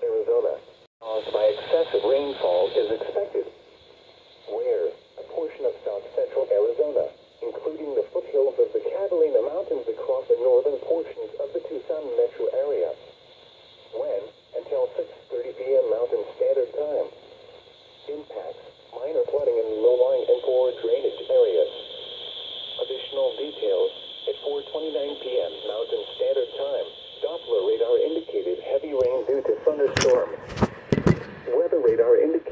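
A voice broadcast on NOAA Weather Radio, reading out a weather warning through a Midland weather alert radio's small speaker. It sounds thin and narrow, over a steady radio hiss.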